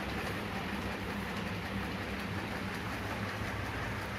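Steady low hum with an even rushing noise over it, unchanging and without distinct knocks or calls.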